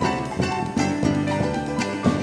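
Live instrumental band playing: electric keyboard, drum kit, a small plucked string instrument and electric bass together, with a busy run of keyboard notes over a steady rhythm.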